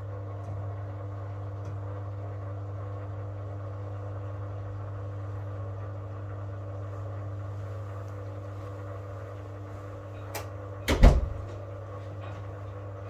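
Beko Aquatech washing machine running with a steady low hum. Near the end a light knock is followed by a much louder heavy thump, the heavy hoodie load banging in the drum.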